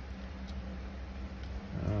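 Steady low background hum with a couple of faint clicks as wiring is handled, then a voice begins just before the end.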